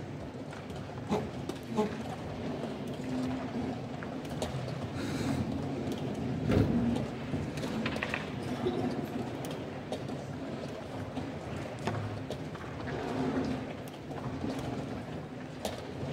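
Busy tournament-hall ambience: a low murmur of voices with scattered clicks and knocks of chess pieces and clock buttons on nearby boards, the loudest knock about six and a half seconds in.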